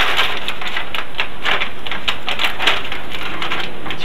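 Parchment paper and adhesive tape handled close up: dense, irregular crackling and rustling as the paper is pressed, folded and taped down.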